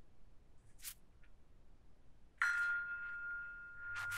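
A single bell-like chime from a phone timer starting, one clear tone that begins about two and a half seconds in and slowly fades. It follows a brief soft rustle or tap a little under a second in.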